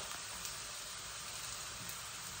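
Ground beef frying in a pan, a steady faint sizzle.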